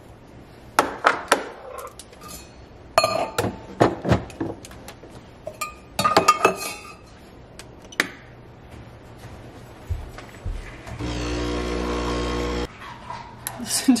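Clinks and knocks of metal espresso parts and a steel milk jug being handled at an espresso machine. Near the end the machine hums steadily for under two seconds and then cuts off suddenly: its pump starting a shot.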